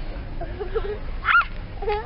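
A single short, high-pitched yelp that rises and falls, about a second and a half in, over faint low voices.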